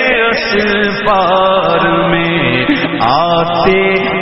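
Male voices chanting a devotional naat: long held notes with a voice sliding through melodic runs over them.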